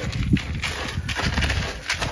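A spoon stirring damp pigeon seed mix in a bucket: an irregular crunchy rustle of grains with scattered small clicks.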